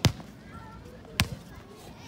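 A football hitting hard surfaces on an outdoor court: two sharp thuds about a second apart.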